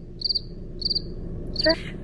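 A cricket chirping in short, high-pitched chirps, each a quick trill of a few pulses, several in a row.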